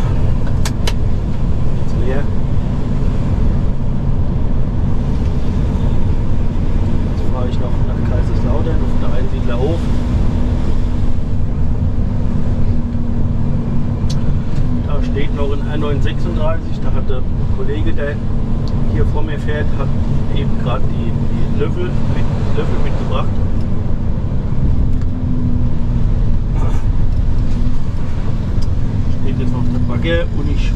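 Mercedes-Benz Actros SLT heavy-haulage tractor's diesel engine running with a steady low rumble, heard from inside the cab while driving. A faint voice comes and goes through the middle.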